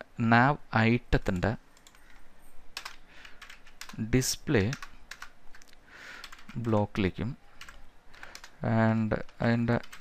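Typing on a computer keyboard: a scattered, irregular run of keystroke clicks.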